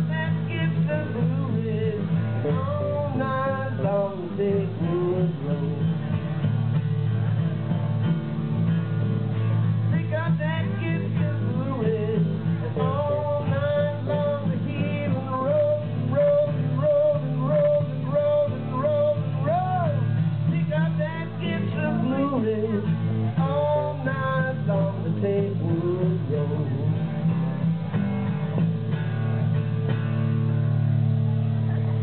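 Live acoustic band music: strummed acoustic guitars under a lead melody line, which holds one long note through the middle and bends up at its end.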